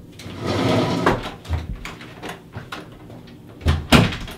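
A person hurrying away from a desk: a rough scraping rush of noise in the first second, a few scattered knocks and steps, then a loud door bang near the end.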